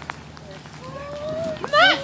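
A person's short laugh near the end, over quiet outdoor background with a faint held voice-like tone just before it.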